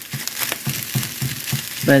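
Fried rice being stirred in a nonstick skillet: a silicone spatula makes short, irregular scraping and tossing strokes through the rice and vegetables over a light frying sizzle.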